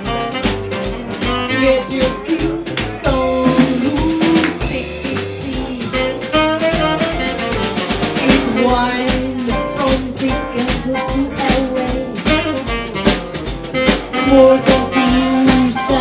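Live jazz combo playing with a steady swinging beat: tenor saxophone, piano, upright bass and drum kit.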